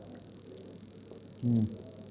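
A man's short closed-mouth "mm" hum about one and a half seconds in, made while chewing a mouthful of food, over faint room tone.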